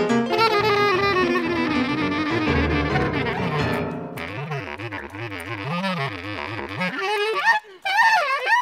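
Free-improvised jazz on reed instruments, alto saxophone and bass clarinet. A line slides downward, then from about halfway wavering notes with wide vibrato sound in a low and a higher register together, with a brief break just before the end.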